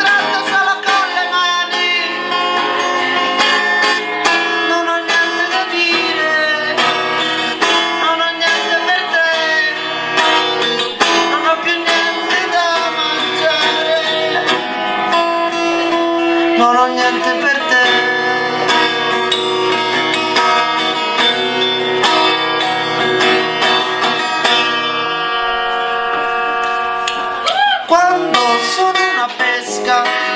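A live solo song: a man singing over a strummed guitar.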